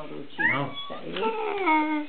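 A small child's high voice, with a short rising squeal about half a second in, mixed with talking.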